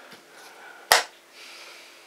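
A single sharp click about a second in, from a blitz chess move: a wooden piece set down on the board or the chess clock's button struck.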